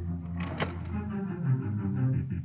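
Music from an audio CD playing through the built-in speaker of a Coby TFDVD7091 portable TV/DVD player, a few seconds into the first track. A sharp hit comes about half a second in.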